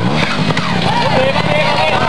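Trials motorcycle engine revving in short throttle blips, its pitch rising and falling as the bike climbs a rock step.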